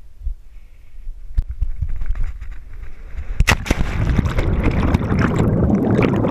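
Cliff jump recorded on a body-worn GoPro: rising wind noise on the microphone during the fall, a sharp splash on hitting the water about three and a half seconds in, then underwater bubbling and churning.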